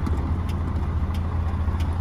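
Mercedes-Benz Axor truck's diesel engine running, a steady low hum heard from inside the cab.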